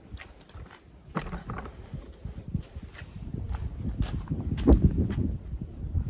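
Footsteps and scattered light knocks as a large pine board is carried and handled beside a table saw, over a low rumble that builds after the middle.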